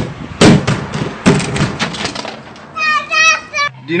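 A plastic tub tumbling down a flight of steps with a child in it, giving a run of hard thuds and clatters in the first couple of seconds, followed by a child's wavering voice.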